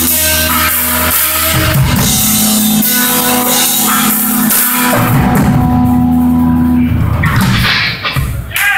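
Live rock band playing loud and instrumental: distorted electric guitar, bass guitar holding long low notes, and a drum kit.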